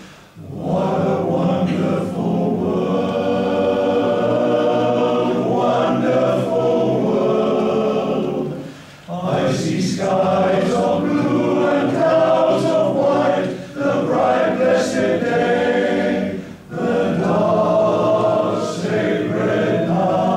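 Male voice choir singing in long sustained phrases, with brief breaks between phrases about nine, thirteen and a half and sixteen and a half seconds in.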